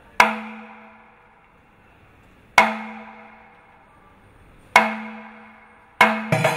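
Kerala temple percussion ensemble of chenda drums and elathalam cymbals sounding three slow, single strokes about two seconds apart. Each stroke rings out and fades over about a second.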